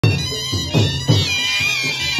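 Several small wind pipes played together in a shrill, wavering mourning tune, over a deep beat that falls about every third of a second.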